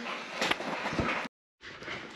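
Light handling noise with a couple of small sharp clicks, cut off by a brief dropout to total silence about one and a half seconds in.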